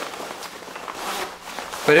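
Faint rustling of a nylon drysuit's fabric as the wearer moves his hands and arms, with a few light scuffs.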